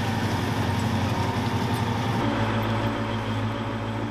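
M2 Bradley Fighting Vehicle's diesel engine idling steadily, its low note shifting about halfway through.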